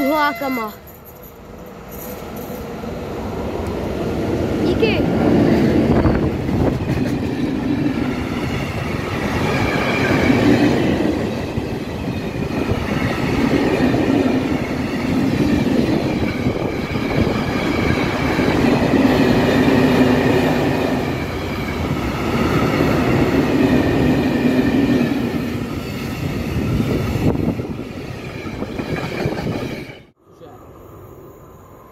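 A freight train sounds a short horn blast that falls in pitch as it nears. Then a long string of covered hopper wagons rolls past close by, loud, with the wheel noise swelling and easing every few seconds, and it dies away near the end.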